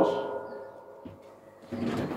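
A pause in a man's speech through a microphone: the last word fades at the start, leaving faint background noise with a faint steady tone under it. Sound picks up again near the end.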